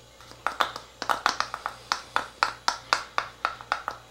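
A metal teaspoon clicking rapidly and lightly against a small bottle while powdered pectic enzyme is measured out, about five sharp clicks a second.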